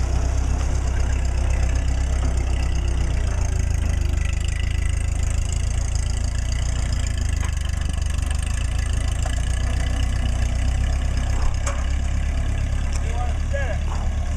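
Small vintage farm tractor engine running steadily at low revs, with a low, even drone, as the tractor moves off slowly.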